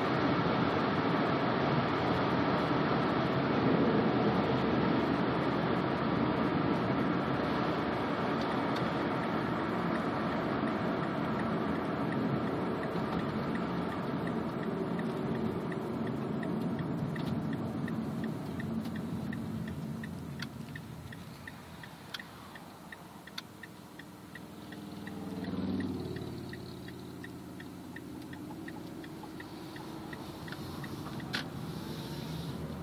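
A 2010 Mazda 3's 2.0-litre four-cylinder, breathing through a Simota carbon-fibre short ram intake, heard from inside the cabin. It runs loud and steady under throttle for the first half, then dies away as the throttle is lifted. About 25 s in, a short rev rises and falls.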